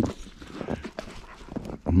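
A young dog leaping and scampering in fresh snow: irregular soft thuds and crunches of its paws landing.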